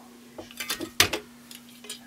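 Hand caulking gun clicking and clacking as it is worked and pulled away, a short string of sharp clicks with the loudest about halfway through. A steady low hum runs underneath.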